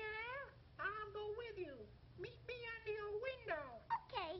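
A run of short, wavering, meow-like wailing cries, several in a row, some sliding down in pitch at the end.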